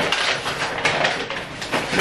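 Close rustling and crackling with small knocks and clicks all through, like food packaging and things on the table being handled near the microphone.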